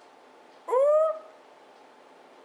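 A woman's single short wordless 'ooh' of surprise, rising in pitch, about a second in.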